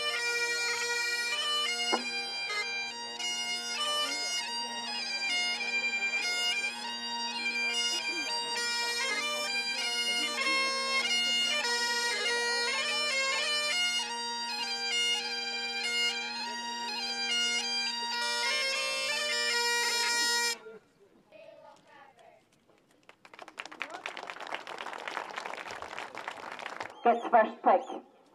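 Two Highland bagpipes playing a march tune over their steady drones, cutting off about three-quarters of the way through. A few seconds of hissing noise follow, and voices start near the end.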